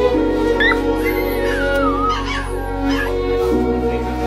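Puppy whimpering in a high, wavering cry that slides down in pitch, in pain from a puncture wound being treated. Slow, sad background music with long held notes plays underneath.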